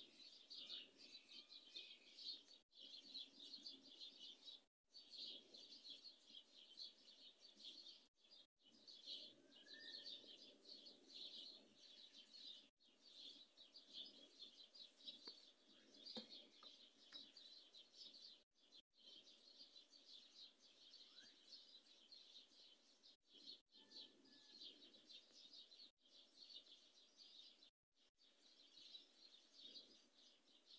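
Faint dawn chorus: many small birds chirping at once in a dense, continuous high twitter, with a few clearer single chirps standing out, and the sound cutting out briefly several times.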